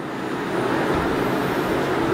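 Steady road-traffic noise, growing a little louder over the first second and then holding level.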